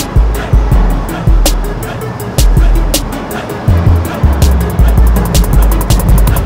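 Background music with a heavy bass beat and sharp ticks over it.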